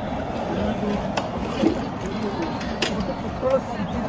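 People talking in the background over a steady rushing noise, with a couple of sharp knocks of a long metal stirring paddle against a large aluminium cooking pot.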